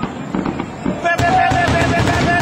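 Aerial fireworks bursting over water, with a sudden rush of rapid crackling starting about a second in.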